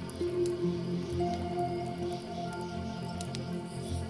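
Soft, slow piano music with held notes, over scattered small pops and crackles of a wood fire.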